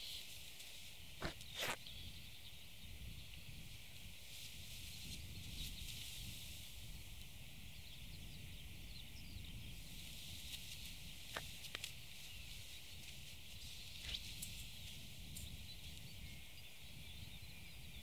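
Faint open-air ambience: a low wind rumble on the microphone over a steady hiss, with a few brief soft clicks now and then.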